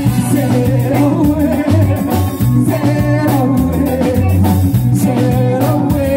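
A live reggae band playing: a pulsing bass line and drum kit under guitar and keyboard, with a singer's melody over the top.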